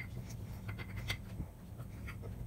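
A spoon stirring dry loose powder in a small glass bowl: faint scraping with scattered light ticks of the spoon against the glass.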